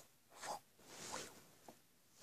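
Near silence with a few faint, brief rustles and a tiny click as small plastic toy figures are handled on a table.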